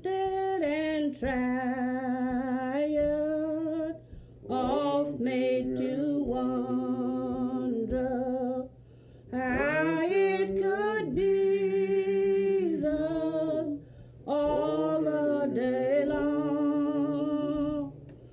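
A voice singing a slow, wordless tune in long held notes that step up and down, in three phrases with short breaks between them.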